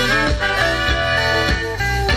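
A live band plays an instrumental passage: a brass section of trumpet, trombone and saxophone over electric guitars, bass and drums, with a steady beat.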